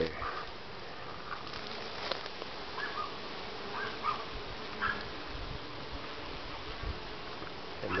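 Honeybees buzzing at the entrance of a strong, busy hive: a steady hum with a few brief, slightly louder notes in the middle.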